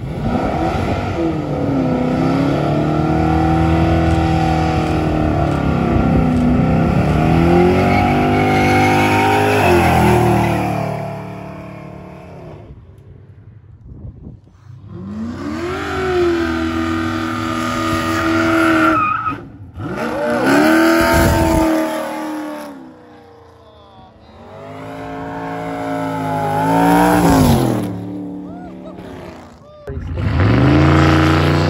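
A car or truck engine revving hard during a burnout, the pitch climbing and falling in repeated pulls over the squeal of spinning tyres. It is loud and sustained for about the first eleven seconds, eases off, then comes back in two more rev-ups, the second one near the end.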